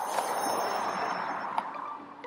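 A rushing noise with no clear pitch that swells at the start and fades away over about two seconds, with a single click near the end.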